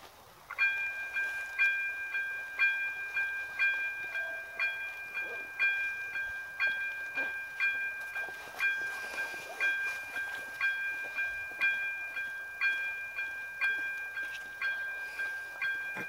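Railway level crossing warning bell starting up about half a second in and then ringing evenly, about two strikes a second: the crossing has activated for an approaching train.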